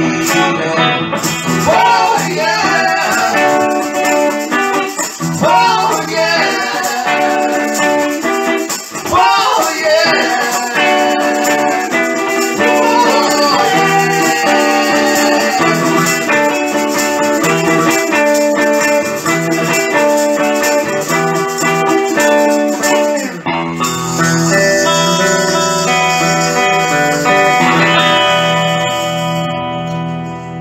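Live music: a Les Paul-style electric guitar with a woman singing and a hand shaker keeping time. The shaker stops about three-quarters of the way through, leaving held guitar chords that begin to fade at the end.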